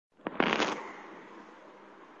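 After total dead silence, a sharp click about a quarter second in, then a short harsh crackly burst and a low hiss as a live video call's audio cuts back in during a network dropout.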